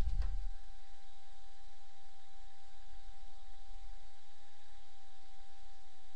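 Room tone: a steady, even hum with a single held mid-pitched tone over a low rumble, and a short low thump right at the start.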